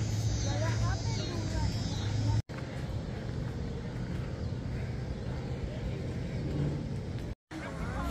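Outdoor ambience on a city riverside walkway: a steady low rumble with faint voices. The sound cuts out abruptly for a moment about two and a half seconds in and again near the end.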